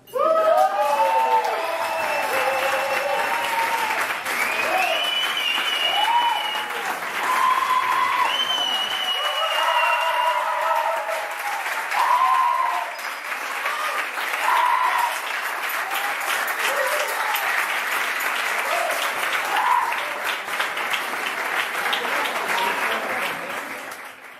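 Audience applause in a hall, starting suddenly and loud, with cheering and whooping voices over the clapping. It fades out near the end.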